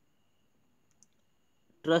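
A pause of near silence with one faint, short click about a second in, then a man's voice starts speaking near the end.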